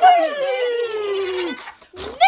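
An imitated horse's whinny: one long call that slides steadily down in pitch and dies away about a second and a half in.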